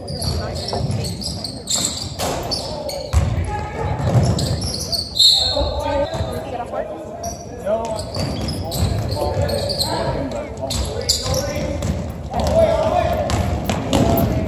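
Basketball bouncing on a hardwood gym floor during play, a string of separate bounces, among indistinct shouts and voices from players and spectators in a large gym.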